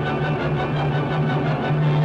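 Orchestral music, full and steady, over a held low note.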